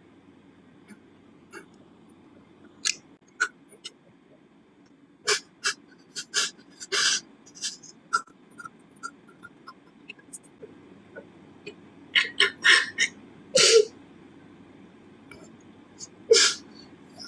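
A person sniffing sharply through the nose several times: short single sniffs, a longer one about seven seconds in, and a quick run of sniffs near the end.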